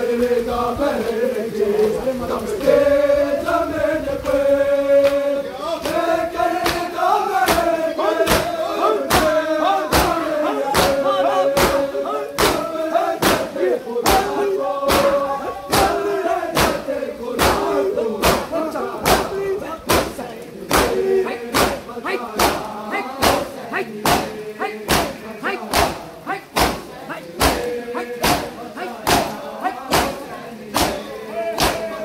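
Men's voices chanting a nauha (Shia lament for Husain) together, with the crowd's matam: open hands slapping bare chests in unison in a steady beat of about three strikes every two seconds. The slaps come in a few seconds in and grow stronger.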